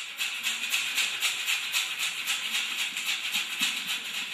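Ritual maracá (gourd rattle) shaken alone in a steady, even rhythm, the opening of a Catimbó-Jurema ponto before the voice comes in.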